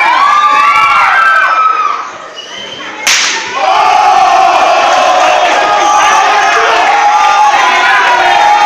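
A crowd is shouting and whooping. About three seconds in comes one sharp, loud slap of an open-hand chop landing on a wrestler's bare chest, and the crowd answers with a long, sustained cry.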